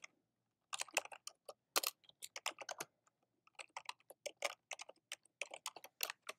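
Typing on a computer keyboard: quick runs of keystrokes that begin under a second in, with a short pause about halfway through.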